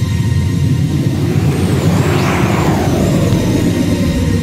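Dark electronic dance music with a steady low bass. A whooshing noise sweep swells about a second in, peaks around the middle and falls away near the end, with a thin wavering high tone on top.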